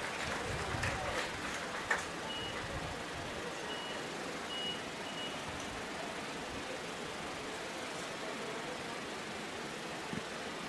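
Faint ballpark ambience: a steady low background hum, a few faint knocks in the first two seconds with the clearest near two seconds in, and four short high-pitched beeps between about two and five seconds in.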